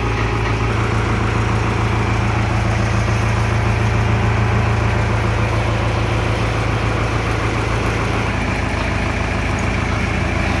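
Tractor diesel engine idling steadily under the hydraulic post-driving hammer rig, an even low hum with no hammer blows.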